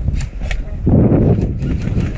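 Low rumble of wind and movement on a helmet-mounted camera's microphone, swelling about a second in, with a few sharp clicks scattered through.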